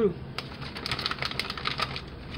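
Quick light clicks and crinkles as a plastic bag of shredded cheddar is handled and the cheese is sprinkled by hand over macaroni in a glass casserole dish.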